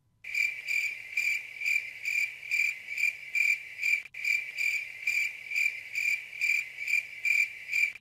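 Crickets chirping, a stock sound effect of the 'awkward wait' kind: an even chirp about three times a second, cut in abruptly, with a momentary dropout about halfway through.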